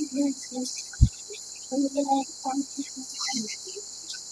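Children's short vocal sounds and a single low thump about a second in, over a steady high-pitched hiss.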